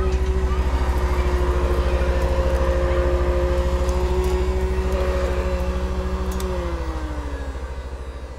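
A machine's motor whirring steadily with a fast pulse and a steady hum. Near the end its tones slide down in pitch and it fades as it winds down.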